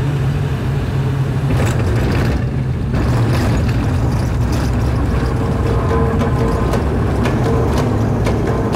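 Cabin noise of a turboprop airliner rolling along the runway after landing: a loud, steady low drone from the engines and propellers under a constant rushing hiss.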